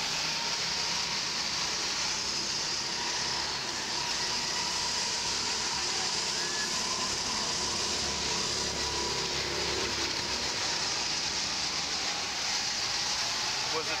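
Steady, even noise of a fairground at night, machinery and rides running, with faint distant voices and a faint steady tone running through it.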